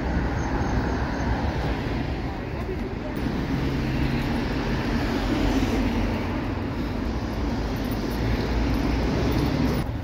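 Road traffic on a town high street: cars driving past, a steady rush of tyre and engine noise.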